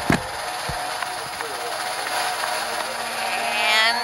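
Cartoon power-up sound effect: a steady buzzing whir with a sharp click just after it starts and a rising sweep near the end, as the superpowers kick in.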